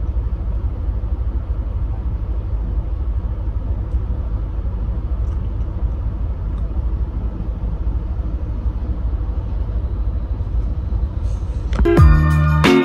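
Steady low rumble of a car heard from inside the cabin, the car stopped with its engine idling.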